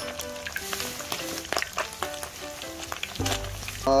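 Oil deep-frying a panful of small freshwater minnows (버들치), a steady sizzle with many small crackling pops.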